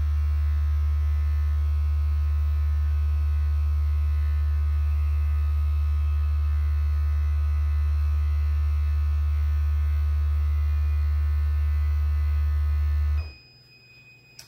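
Fierton heat press humming loudly and steadily while it holds its timed press, then cutting off suddenly about 13 seconds in as the countdown runs out. A high electronic beep follows near the end, signalling that the pressing cycle is finished.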